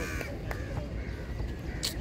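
A crow cawing: a few short, harsh caws, the loudest at the very start and another about half a second later. A brief sharp click comes near the end.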